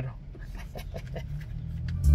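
Low steady hum of a car cabin with the car stopped in traffic, with a few faint ticks.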